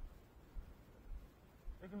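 Faint low rumble of wind buffeting the microphone outdoors, with small irregular bumps. Near the end a man's voice starts on a long, drawn-out word.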